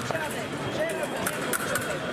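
Indistinct voices, with a few short sharp clicks, most of them in the second half.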